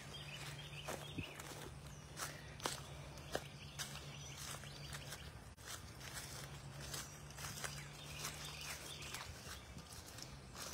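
Faint outdoor ambience: scattered light clicks and crunches at irregular intervals over a steady low hum.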